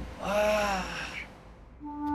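A person's strained gasp, voiced and breathy, lasting about a second, then fading away; sustained music tones come in near the end.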